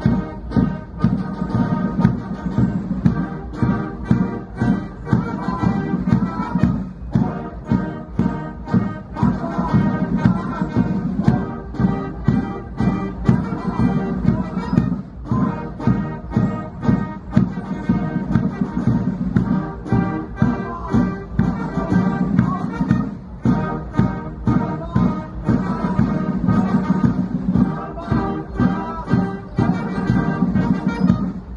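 A band playing a march, with sustained brass and a steady, regular drum beat.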